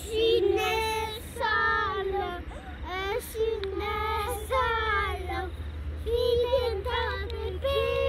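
Young children singing a song in high voices, in phrases of held, wavering notes separated by short breaks.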